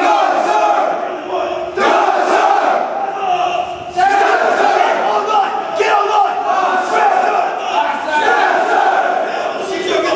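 Drill instructors and recruits shouting at once: many loud men's voices overlapping in a continuous din of yelled commands and replies, dipping briefly about two and four seconds in.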